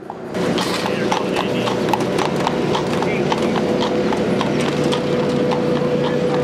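Horse hooves clip-clopping on an asphalt road as horse-drawn carriages pass, about four hoof strikes a second. A steady hum runs underneath and grows a little stronger near the end.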